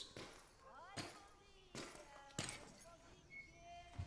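Faint ambience with three sharp cracks or knocks, spaced well under a second apart, and a few short chirps between them.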